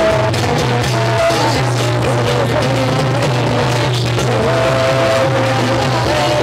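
Loud dance music with a steady bass line, a regular drum beat, and a lead melody that slides between held notes.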